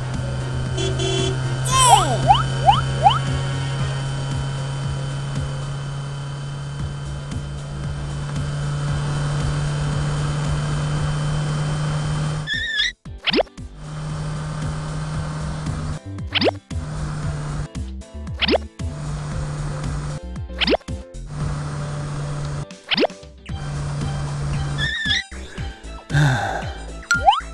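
Background music with cartoon sound effects. A steady low hum runs through the first half, with a few quick gliding whistles about two seconds in. Then the hum stops and restarts, broken by five quick rising boing-like whistles a couple of seconds apart.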